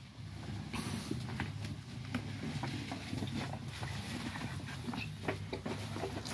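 Footsteps and rustling between apple-tree rows: scattered light steps and clicks over a faint, steady low hum.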